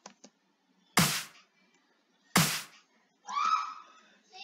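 Two loud, sharp clap hits about a second and a half apart, each dying away within half a second, after a couple of soft mouse clicks. Near the end a short, high vocal sound with a bending pitch follows.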